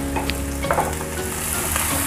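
Chopped onions and cumin seeds frying in oil in a ceramic frying pan, a steady sizzle, with a wooden spatula stirring them near the end.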